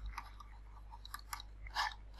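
A few faint, short clicks over a steady low hum.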